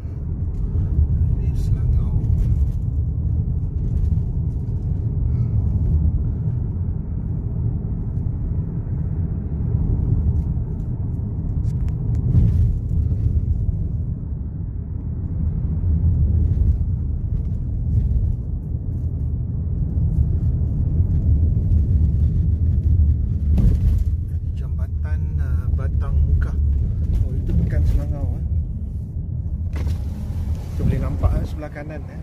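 Road rumble inside a moving car's cabin: the engine and tyres running at a steady cruising speed on a rural road.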